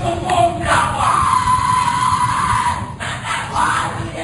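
Covert recording of the Skull and Bones initiation ceremony: several voices shouting and yelling, with one long drawn-out cry held from about a second in until near the three-second mark, then more shouting near the end.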